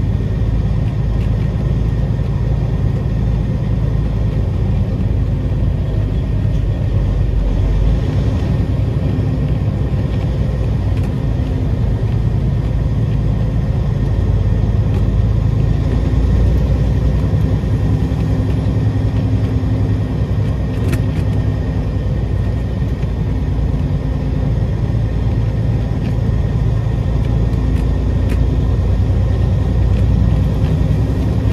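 Peterbilt 389 big-rig diesel engine running at low speed, heard from inside the cab as a steady low rumble. Its pitch shifts about eight seconds in and again around sixteen seconds.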